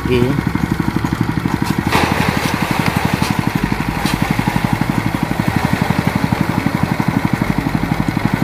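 Small engine of a rice thresher running steadily with a fast, even pulse, with the rustle and rattle of rice stalks being threshed.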